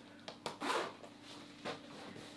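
The side zipper of an ankle boot being pulled up as the boot goes on: a short rasp about half a second in, with a few soft rubs and taps of the boot.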